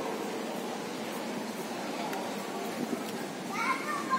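Steady background hum of an open shopping plaza, with a child's high-pitched voice calling out briefly near the end.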